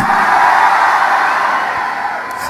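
Congregation shouting and cheering in response, a blended crowd roar that dies down over the two seconds.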